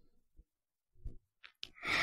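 Near silence with a couple of faint clicks about a second and a half in, then a person drawing breath near the end, just before speaking.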